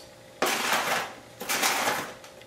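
Scoops of whole coffee beans poured into a stainless-steel grinder: two short rattling pours about a second apart.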